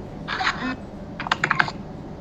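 A short burst of taps about a third of a second in, then a quick run of sharp clicks around a second and a half in.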